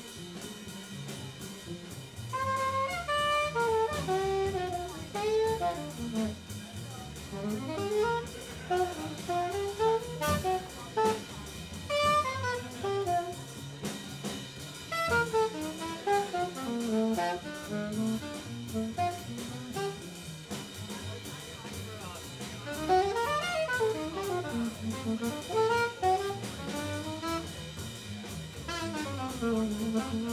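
Live jazz trio: a saxophone plays a solo of quick runs rising and falling, over a plucked upright bass and a drum kit keeping time.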